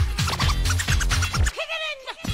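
House dance track with a steady kick drum and record scratching over it. About one and a half seconds in, the beat drops out briefly, leaving a wavering scratch sweep before the kick returns.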